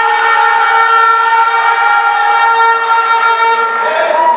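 A loud, steady pitched tone, like a horn, held at one pitch and cutting off near the end.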